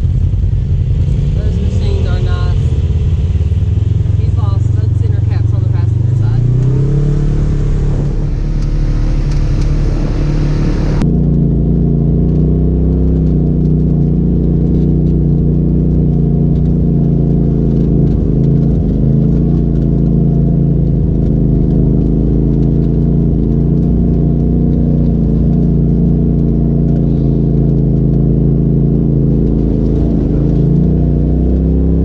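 Side-by-side UTV engine running, rising in pitch as the machine pulls away and picks up speed. About eleven seconds in the sound changes suddenly to another UTV's engine running at a steady, slightly varying pace as it drives along a rough dirt trail.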